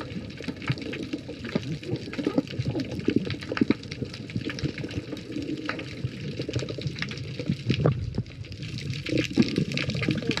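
Underwater water noise: bubbling and gurgling with many small clicks and pops, and a few wavering low tones.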